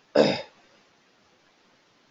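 A man clearing his throat once, a short sharp burst just after the start, then only faint room hiss.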